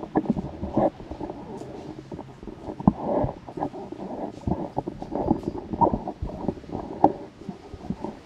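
Microphone handling noise as a hand adjusts a mic on its stand: a dense run of irregular bumps, knocks and rubbing.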